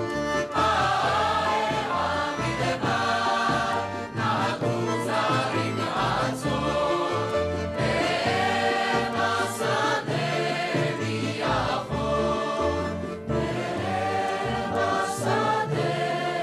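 Mixed choir of men and women singing a Hebrew song together over instrumental backing with a steady bass line.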